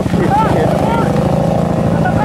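Several ATV engines running steadily at idle, a continuous low drone.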